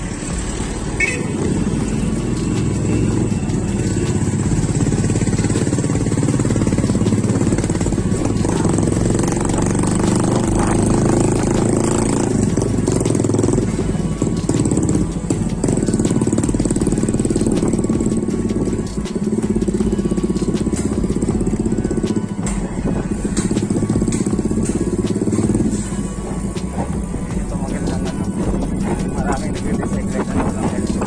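Background music laid over steady city traffic noise, with motorcycle engines running in the mix.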